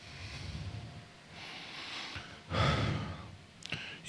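A man breathing and sighing close to a handheld microphone, with a louder exhale about two and a half seconds in and a few small mouth clicks near the end.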